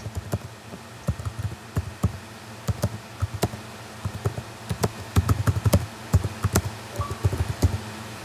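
Typing on a computer keyboard: quick, irregular keystrokes as a chat message is typed out and sent.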